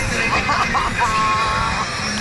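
Indistinct voices and shouts over steady background noise, with a brief held tone about a second in.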